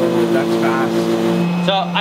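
Benchtop laboratory spray dryer running as it sprays milk: a steady mechanical hum from its fan and pump, with a low drone and higher tones. The higher tones drop out about a second and a half in.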